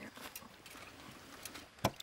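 Low, even background noise, then near the end a single sharp plop and splash as a potato drops into a glass of lemonade.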